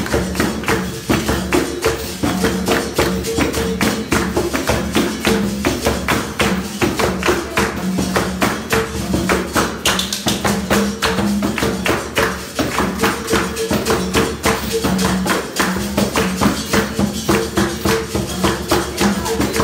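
Capoeira roda music: a berimbau twanging back and forth between two notes over a fast, steady pandeiro and atabaque rhythm.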